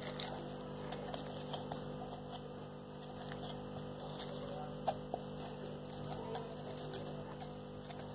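Faint light taps and rustles of hands handling a small plastic container packed with plastic scrubber mesh, with one sharper click about five seconds in, over a steady low hum.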